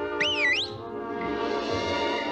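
Cartoon film soundtrack music holding a sustained chord, with a short high swooping glide, up then down, in the first half second.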